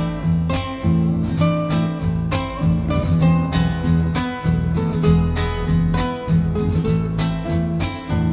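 Instrumental Argentine folk music: acoustic guitar strummed in a steady rhythm over a low bass line, with no singing.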